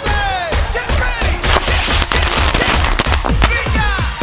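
Electronic dance music with a pulsing beat, and fireworks going off in a burst of crackling bangs about a second and a half in.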